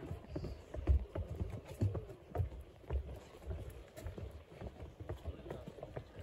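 Footsteps going down wooden steps: a string of dull thuds, roughly one or two a second.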